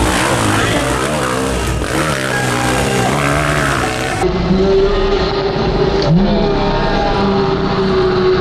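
Trail motorcycle engines revving up and down, the pitch wavering as the throttle is worked. About four seconds in the sound changes to a steadier engine note held at high revs.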